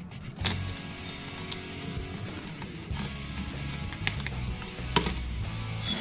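Background music, with a few sharp clicks of metal and polymer rifle parts being handled as the pistol grip is taken off the AK receiver.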